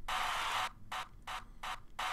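A sampled arena crowd-cheering layer, played back chopped in rhythm: one longer burst of crowd noise, then three short cut-off bursts.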